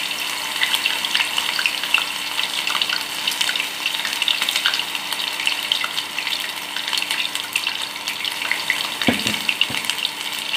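Batter-coated cauliflower florets deep-frying in hot oil: a steady sizzle with fine crackling throughout, and a brief low bump near the end.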